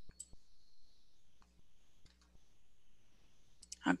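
A few faint, short clicks, spaced irregularly, in an otherwise quiet pause; a voice begins right at the end.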